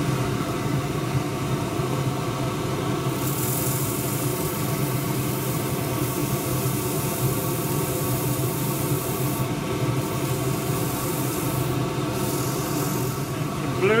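Wood lathe running steadily with a motor hum while 180-grit abrasive is held against the spinning Manchurian pear bowl. A sanding hiss comes in about three seconds in, lasts around six seconds, and returns briefly near the end.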